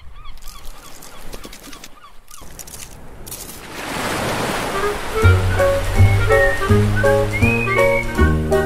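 Animated logo sting: a quick run of warbling chirps, then a rush of surf splashing, then upbeat music with a bass line starting about five seconds in.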